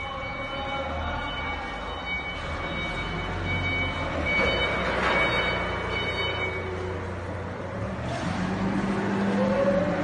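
Wooden tongue depressor drying and polishing drum machines running: a steady low mechanical hum with machine noise, and faint high steady whines that fade out about seven seconds in.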